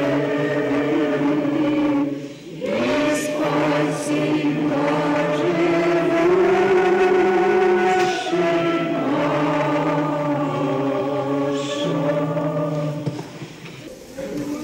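Group of voices singing Orthodox liturgical chant in long, held chords, pausing briefly between phrases about two seconds in and again near the end.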